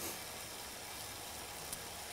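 A steady faint hiss of room tone, with one small tick near the end.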